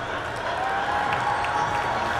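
Crowd of spectators applauding, a steady din of clapping and crowd noise in a large indoor track arena.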